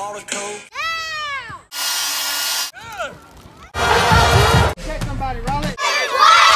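A run of one-second home-video clips cut hard one after another: people's voices calling out, one long rising-then-falling call about a second in, a steady hiss about two seconds in, and a loud noisy burst with a low rumble about four seconds in.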